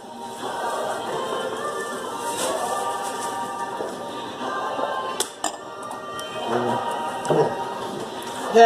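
Choral music with sustained sung notes playing in the background, with a couple of short sharp clicks about five seconds in.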